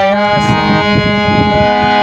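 Harmonium playing a slow melody of held reed notes, stepping between pitches, with a hand-drum beat underneath.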